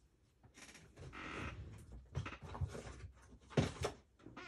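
Craft supplies being rummaged through in a search for foam tape: a rustle in the first half, then several short knocks as items are moved about in the second half.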